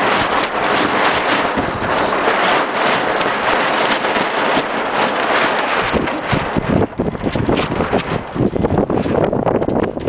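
Wind buffeting the microphone on an open sailboat during a tack: a loud, steady rush that turns gusty and uneven, with low rumbling, from about six seconds in.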